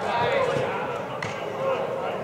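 Practice ambience in a large indoor football hall: indistinct voices of players and coaches talking and calling out, with a sharp thud, such as a ball being caught or hitting the turf, a little over a second in.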